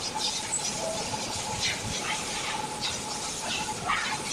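Coil winding machine spinning a motor coil former as copper magnet wire is wound on. It gives repeated short hissing, scraping swishes, two or three a second, over a faint steady whine.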